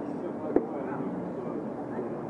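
Background murmur of voices in a restaurant dining room, with a single sharp knock a little after the start.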